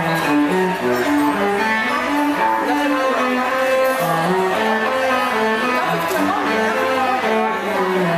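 A small string ensemble, a cello with violins, playing a piece together: a moving line of short, separate notes over a steady lower part.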